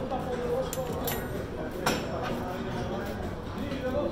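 Indistinct background voices in a gym, with one sharp clank a little under two seconds in.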